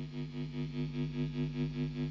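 Electric guitar holding a chord through an effects unit, the sound pulsing evenly about five times a second and slowly growing louder.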